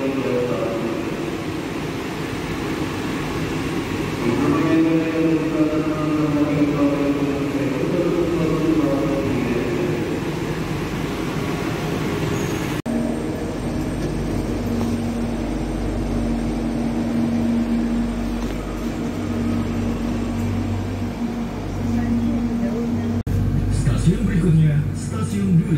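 KAI Commuter airport-train electric multiple unit pulling into the platform and slowing to a stop, with pitched motor tones that rise and fall. After a sudden cut about halfway through, a steady low rumble with a constant hum continues from the train.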